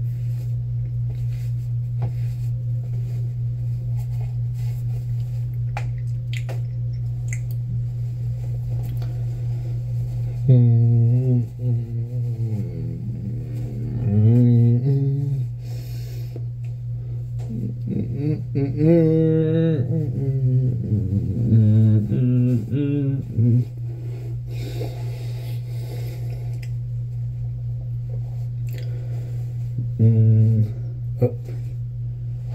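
A man humming a wavering, wordless tune in two stretches of a few seconds each, starting about ten seconds in, over a steady low hum that runs throughout.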